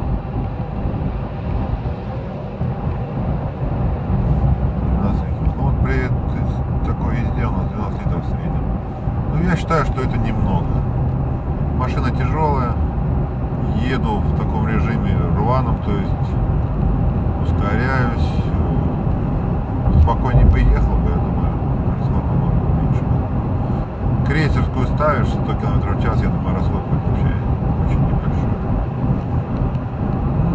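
Cabin noise of a Toyota Land Cruiser Prado 150 with the 2.8 four-cylinder turbodiesel at highway speed, around 110–135 km/h: a steady low drone of engine, tyres and wind, heard from inside the car.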